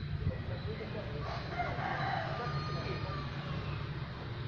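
A faint, drawn-out rooster crow beginning about a second in, over a steady low rumble.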